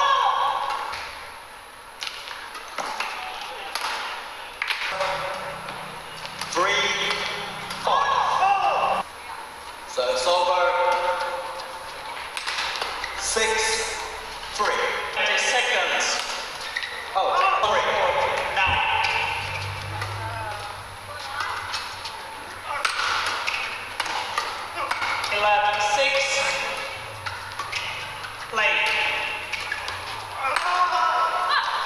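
Badminton doubles rallies: rackets strike the shuttlecock in a string of sharp hits, with voices and shouts around the court.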